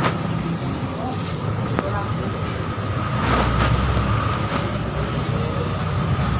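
Steady rumble of motor vehicles with faint voices in the background, and a few light clicks.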